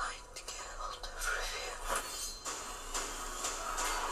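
Fantasy trailer soundtrack playing: a hushed, whispered voice over scattered short clinks and sound effects, with little music.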